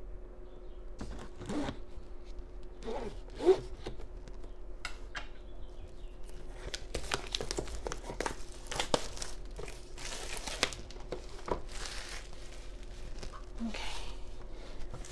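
A cardboard product box being opened and handled, with plastic packaging crinkling and rustling, and denser crinkling in the second half. A sharp tap stands out about three and a half seconds in.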